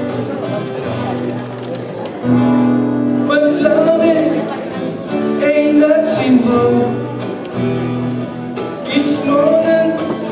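Acoustic guitar strummed with a man singing along in held, simple melody lines.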